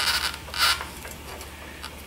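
Hands twisting and tugging at a stuck rubber fuel hose on a small two-stroke carburetor, making short rubbing, scraping noises: one at the start and another about half a second later, then little more than faint handling.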